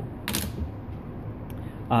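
Plastic gel casting trays handled on a lab bench: a short clack about a third of a second in as one tray is set down, then a faint tick about a second later.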